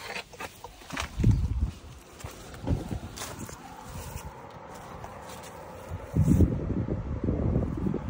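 Footsteps on grass and paving with rustling and handling noise, irregular rather than a steady rhythm, with a heavier cluster of low knocks near the end.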